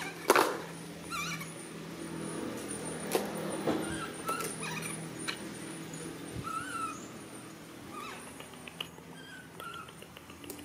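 Pink plastic crate knocking and scraping on paving tiles as a small monkey climbs on and pushes it. The loudest knock comes right at the start, with lighter knocks a few seconds later. Short high chirps come and go throughout.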